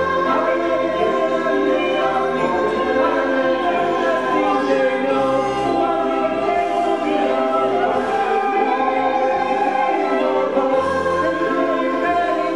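Musical-theatre cast singing together in full voice, several sustained vocal lines at once over low held notes of the accompaniment.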